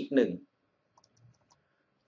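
A few faint, short clicks about a second in, from the pointing device used to write on a computer drawing screen.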